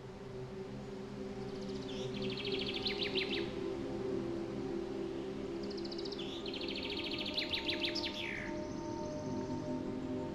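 Soft ambient music of sustained, steady tones, with a songbird singing twice over it: each phrase a fast trill of about two seconds, the first about two seconds in and the second near the middle, ending in a falling note.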